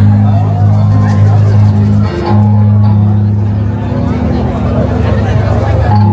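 Electric guitar played live through an amplifier: an instrumental passage of sustained low notes that shift pitch about two seconds in, with higher picked notes over them.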